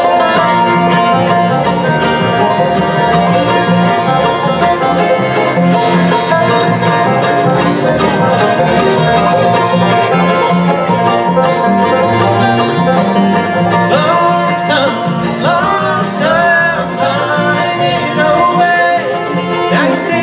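Bluegrass band playing an instrumental introduction: banjo, mandolin, acoustic guitar, fiddle and upright bass together, with no singing yet.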